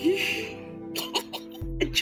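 A man laughing in short breathy bursts over soft background music, with a short low thud near the end.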